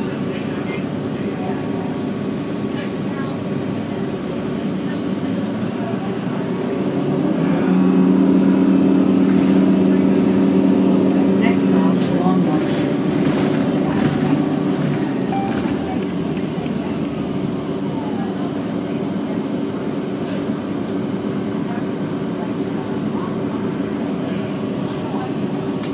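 Cabin sound of a 2009 Orion VII NG diesel-electric hybrid city bus: a steady running hum from the drive. It swells from about seven seconds in and eases off after about twelve seconds as the bus pulls away from a stop and gets under way.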